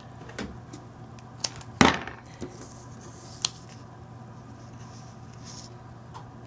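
A few light clicks and knocks of craft supplies being handled and set down on a tabletop, with one sharper knock about two seconds in.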